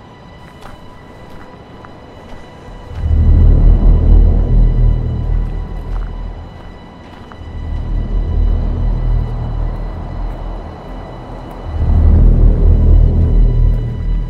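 Dark, ominous trailer soundtrack music. It is quiet at first, then deep bass swells come in about three seconds in and return twice, over a faint steady high tone.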